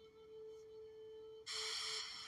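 A faint, steady thin tone holding one pitch, with a hiss coming in about one and a half seconds in.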